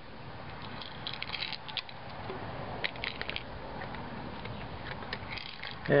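Plastic cap of a QMD pill bottle-dispenser clicking as it is twisted back on, in three short runs of ratchet-like clicks.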